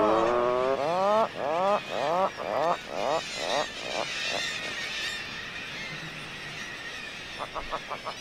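Atlantic puffin calling: one long held note, then a run of short rising swoops about two a second that grow shorter and fainter and die away about halfway through.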